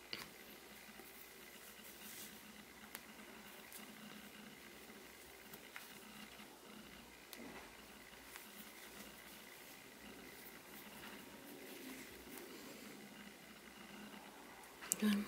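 Near silence with faint, scattered small ticks and rustles of yarn being worked with a metal crochet hook, making a chain.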